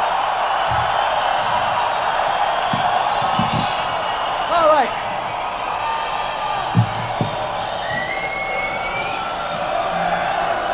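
A large concert crowd yelling and cheering, a dense mass of many voices. A few single high calls slide in pitch above it, one falling near the middle and one rising later. There are two short low thumps about seven seconds in.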